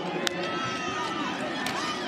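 Football stadium field sound at the line of scrimmage before the snap: crowd noise with indistinct voices and a steady hum, and one sharp click about a quarter second in.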